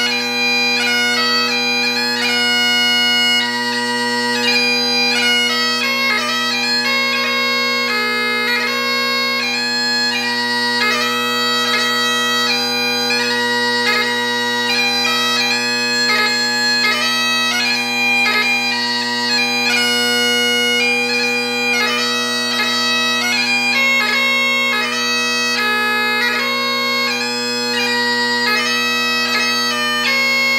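Great Highland bagpipe with a plastic pipe chanter playing a traditional tune in 3/4 march time: steady drones sound throughout beneath the chanter melody, which is broken up by quick grace notes.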